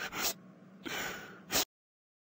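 A woman crying in short, breathy sobbing gasps, three of them, which cut off suddenly just before the end.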